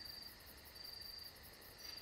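Crickets chirping faintly: a high trill that comes in spells of about half a second, roughly once a second.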